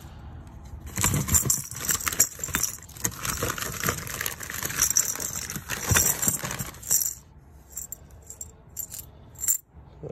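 Metal power-wash tokens clinking and jingling like loose change while a box is rummaged through, mixed with crinkling newspaper; busy for about seven seconds, then only scattered clicks.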